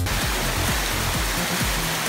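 Water from an indoor fountain's jets splashing and running down its rock base: a steady rushing hiss. Electronic dance music plays underneath.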